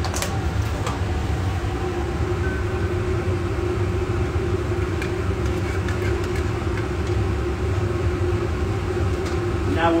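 Steady low ventilation hum filling the room, with faint voices in the background and a few light clicks.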